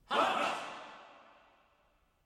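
A man's sudden loud, breathy cry with no clear pitch, ringing on in a long echo and dying away over about two seconds.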